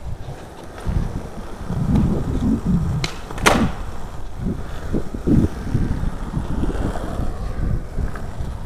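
Skateboard on Spitfire Formula Four 52 mm urethane wheels being pushed and rolling over smooth concrete, a continuous rumble that swells and eases. A single sharp click about three and a half seconds in.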